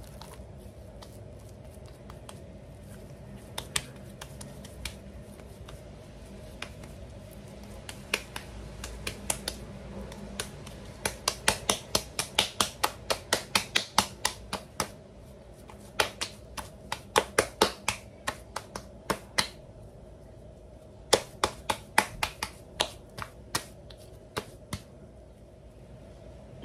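Hands patting a ball of masa dough flat for a huarache, in quick runs of sharp slaps about three or four a second, with short pauses between the runs.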